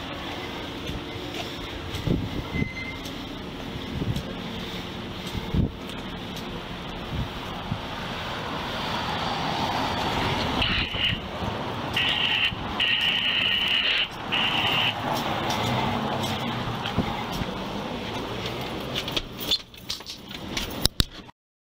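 Rubbing and knocks of a body-worn camera on someone walking along a street, over traffic noise with a vehicle going by. About halfway through, a high steady tone sounds in four short spells.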